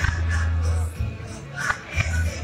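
Amplified music with a strong, steady bass line and a sharp percussive hit near the end.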